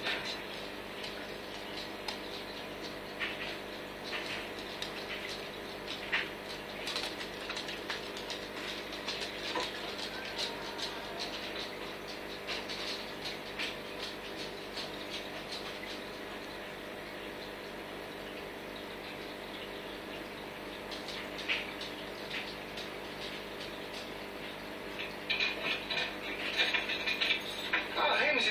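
Aquarium equipment running: a steady hum with a fine, irregular crackle of moving water and bubbles, with busier, louder sound in the last few seconds.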